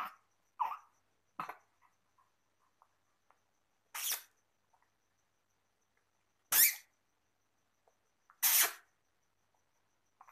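Young infant making short breathy vocal sounds: a few soft ones early on, then three louder, sharper ones about two seconds apart.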